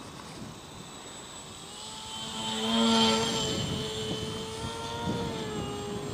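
Propeller motor of a small radio-controlled Depron foam flying wing, a steady whine of several tones that grows louder to a peak about three seconds in and then fades as the model passes.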